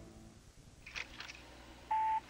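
A mostly quiet stretch, then a steady electronic beep at one pitch starts near the end.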